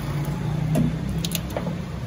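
A steady, low engine hum, with a few light clicks a little over a second in.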